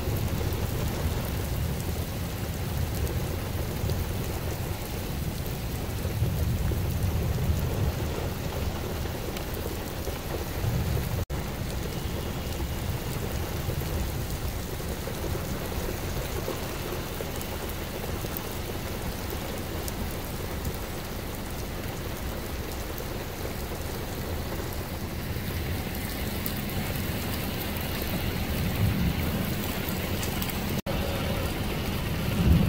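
Thunderstorm: low rolling thunder that swells and fades several times over a steady hiss of rain.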